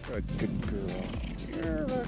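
A cheetah purring close to the microphone, in even low pulses about three a second.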